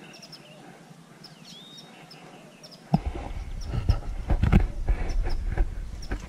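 Small birds chirping in short repeated calls, some swooping up to a held whistle. About halfway through, loud low rumbling and knocking from the handheld camera's microphone being moved about takes over.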